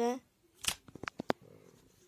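Handling noise of a phone held close to the microphone: a quick run of about seven clicks and taps within a second, followed by faint rustling.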